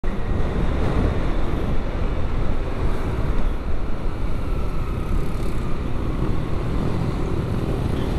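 Motorcycle ridden at road speed: steady wind rush over the onboard camera's microphone mixed with engine and tyre noise.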